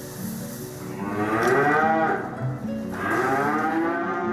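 Cattle mooing: two long moos, each rising and then falling in pitch, the first about a second in and the second near the end.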